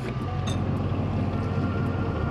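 A vehicle's engine running steadily, a low, even hum with no revving. A short, high clink about half a second in.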